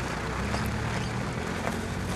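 Outdoor street ambience dominated by a steady low hum like a motor vehicle's engine running, with a couple of faint knocks.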